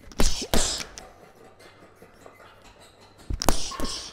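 Boxing gloves landing punches on a heavy bag: two quick strikes near the start, then two more shortly before the end.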